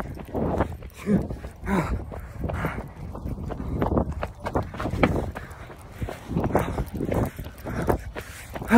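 Heavy panting and breathless laughing from people hurrying on foot, about two breaths a second, with clothing rubbing and knocking against the phone's microphone.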